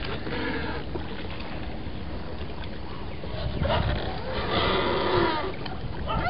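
Water splashing and lapping around a small rowboat on the river, over a steady low rumble, with two louder swells of splashing a little past halfway.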